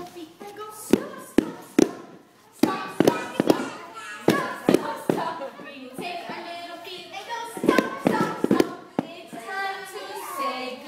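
Hands clapping in short, irregular runs of sharp claps, with pauses between them. Voices are heard between the runs of claps.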